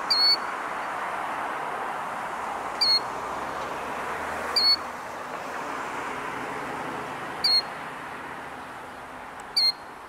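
Killdeer calling: single short, high, clear notes repeated every two to three seconds, with a quick double call near the end, over a steady background hiss.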